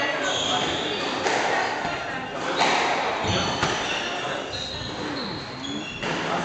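Squash rally: racket strikes and the ball hitting the walls, four sharp hits about a second apart, each ringing in the hard-walled court.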